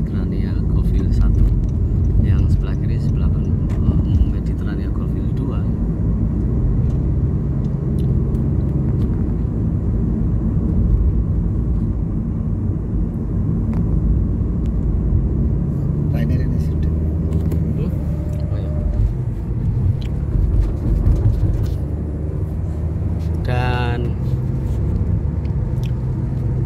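Steady low rumble of a car's engine and tyres, heard from inside the cabin while driving along a road.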